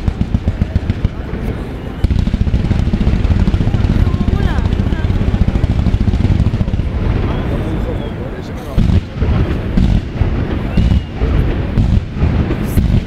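Fireworks display firing from ground level: a quick string of sharp reports thickens about two seconds in into a continuous rumble of shots. Separate loud bangs follow near the end.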